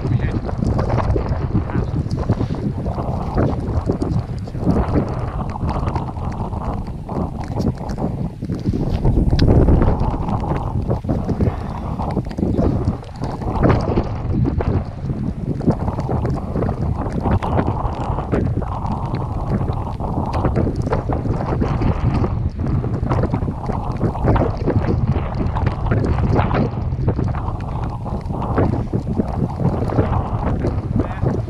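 Strong gusty wind buffeting an action camera's microphone: a loud low rumble that rises and falls with the gusts, strongest about nine to ten seconds in.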